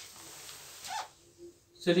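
Paper pages of a textbook rustling as they are handled and turned, a soft sound lasting just under a second, then quiet.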